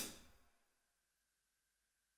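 Tail of a single hi-hat hit from the Roland FA-08's built-in drum sounds, played from the keyboard, fading out within the first half second, then near silence.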